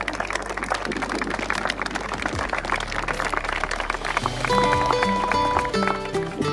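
Guests applauding, with instrumental music underneath that comes to the fore about four seconds in as the clapping thins out.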